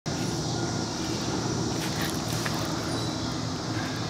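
Steady outdoor background noise with a low rumble and a faint high hiss.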